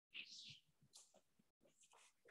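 Near silence, broken about a fifth of a second in by a brief, faint high scratch of chalk on a blackboard.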